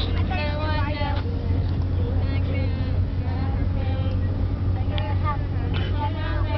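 Steady low drone of a moving vehicle's engine and road noise heard from inside the cabin, with young women's voices singing and talking over it at times.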